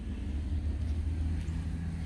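A low steady rumble, with a faint steady hum joining in about one and a half seconds in.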